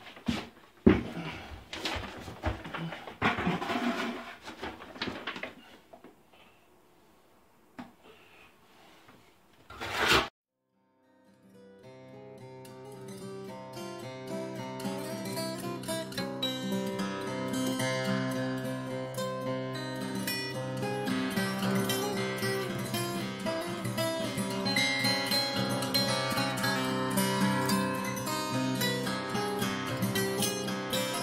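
Notched steel trowel scraping thinset mortar across shower wall board for about ten seconds, with a couple of sharp knocks. After a brief silence, acoustic guitar music fades in and carries on.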